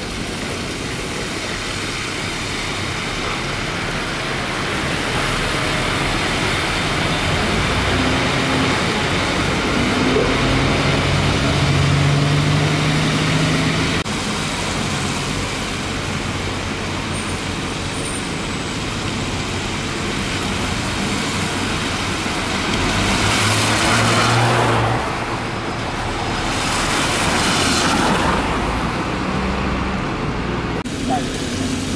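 Double-decker buses pulling away and passing on a wet road: engines running under a steady hiss of tyres and traffic, with two louder bursts of hiss in the last third.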